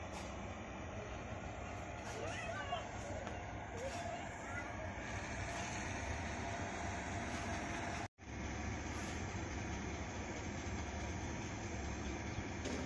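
Steady outdoor background noise, a low rumble under a hiss, with a few faint bird-like chirps in the first half. The sound drops out for an instant about eight seconds in, then the rumble carries on slightly stronger.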